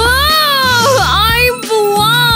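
A girl wailing loudly in exaggerated crying: one long drawn-out wail whose pitch wobbles and breaks about a second in, then a second wail starting near the end.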